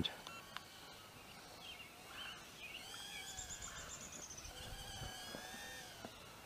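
Faint birdsong: thin warbling and chirping calls, with a quick high trill about three seconds in.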